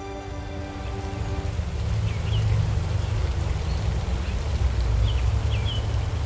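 Music fades out in the first second and a half. A jet fountain then splashes steadily into a pond, a rain-like hiss over a low rumble, and a few short bird chirps come through it.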